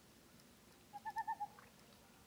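Common loon giving a faint, wavering tremolo call about a second in, pulsing several times over about half a second.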